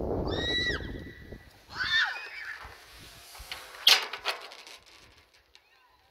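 A person's two short, high-pitched screams in the first two seconds, typical of a rope jumper leaping from a bridge, over low rumbling wind on the microphone. A single sharp click near four seconds, then near quiet.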